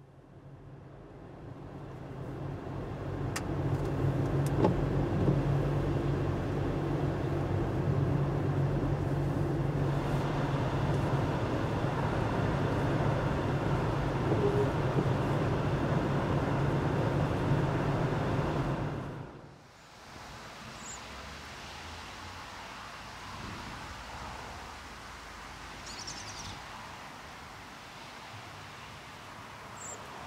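A car driving along a road: steady engine and tyre noise with a low hum. It fades in over the first few seconds and cuts off abruptly about two-thirds of the way through, leaving a quieter steady background.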